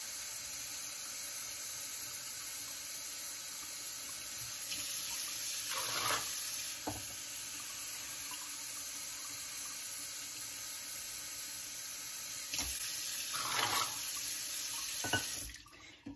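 Tap water running in a steady stream into a large metal pot of soaked beans, filling it with fresh water. The stream stops shortly before the end.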